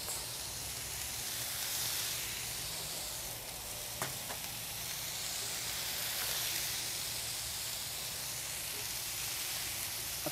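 Bacon strips and frozen burger patties sizzling steadily on a hot Blackstone flat-top griddle as more bacon is laid down, with a single light click about four seconds in.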